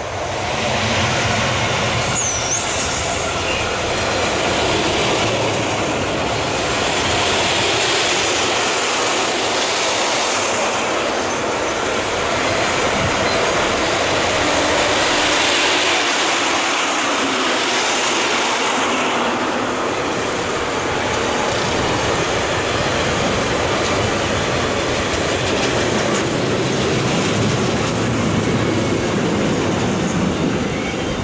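Freight train of loaded fuel and gas tank wagons rolling past at speed: a steady, loud rush of steel wheels on rail that swells and eases every few seconds as the bogies go by, with some clickety-clack over the rail joints.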